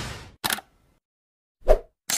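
Sound effects of an animated logo sting. A whoosh tails off, then a short sharp click comes about half a second in, and a brief thud near the end.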